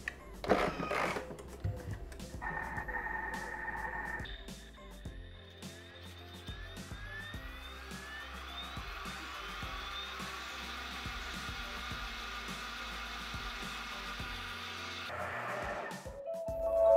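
Thermomix TM6 (Bimby) running at top speed while water is poured in through the hole in its lid: a steady whirring hiss that starts about four seconds in and cuts off abruptly about a second before the end. Quiet background music plays underneath.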